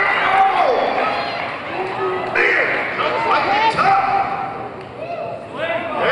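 Indistinct voices calling out in a large gym, with a few thuds.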